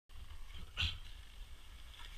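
Low wind rumble on an action camera's microphone, with one brief, sharper sound a little under a second in.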